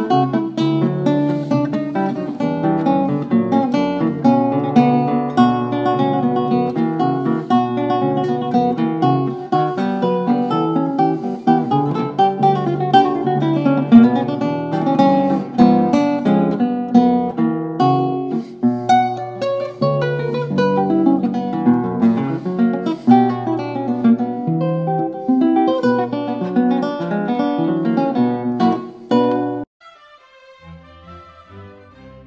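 Russian seven-string acoustic guitar played solo, a quick stream of plucked notes and chords that stops abruptly near the end.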